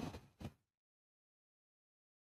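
Near silence: the faint tail of an exhaled 'whew' fades out in the first half-second, then dead silence.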